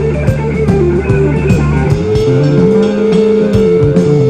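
Live blues-rock trio playing loudly: a headless electric guitar soloing over bass guitar and drums. About halfway through, the guitar holds one long note while a lower bent note rises beneath it.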